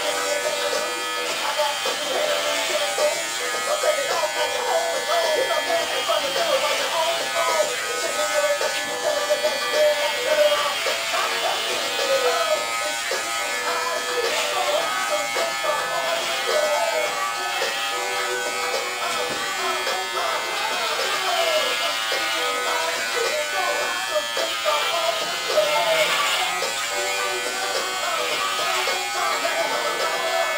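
Electric hair clippers buzzing steadily while cutting short hair, with music and voices going on over them.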